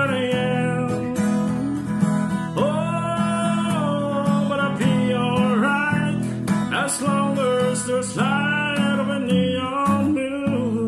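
A man singing long, held notes over a strummed acoustic guitar.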